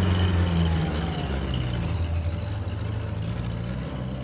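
A motor vehicle's engine running steadily as it drives off, slowly growing quieter.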